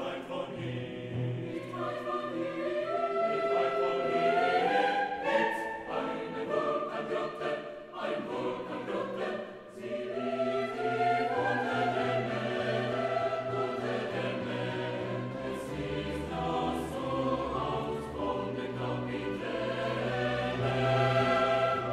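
Choir singing a contemporary classical choral piece, the voices moving in chords, with a low note held underneath through the second half.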